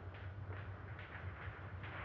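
Steady low hum and hiss of an old optical film soundtrack, with faint crackles.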